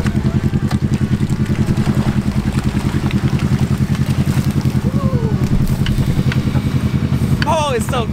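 An ATV engine running steadily at low revs with an even throb, under load as it tows a drowned four-wheeler out of a pond on a tow strap.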